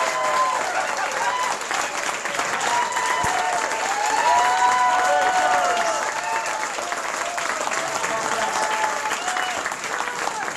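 Audience clapping and cheering, with shouted whoops and voices rising and falling over steady applause.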